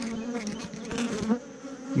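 A colony of honeybees humming steadily over frames of an open hive box, with a few light clicks in the middle.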